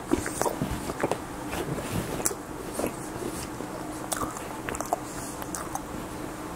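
Close-miked chewing of a mouthful of breakfast food, with irregular wet mouth clicks and smacks that are busiest in the first few seconds. A sharp click comes right at the start.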